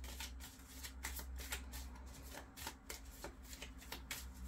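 A deck of oracle cards being shuffled by hand: a quick, irregular run of soft papery slaps and flicks of card against card, over a low steady hum.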